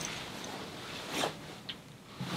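Faint rustling of clothing and gear as a person moves, with a short swish about a second in and a small click near the end.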